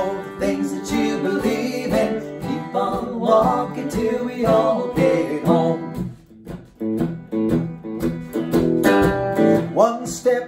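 Steel-string acoustic guitar strummed together with an electric guitar in a folk song's passage between sung lines, with a man's voice singing briefly near the start and coming in again at the very end.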